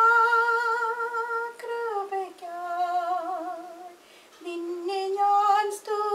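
A woman singing a slow song in long held notes with vibrato, the melody stepping down about two seconds in. She breaks off for a moment about four seconds in, then sings on.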